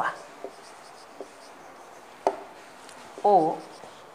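Marker pen writing on a whiteboard: faint scratching with a few light ticks and one sharper click a little past the middle.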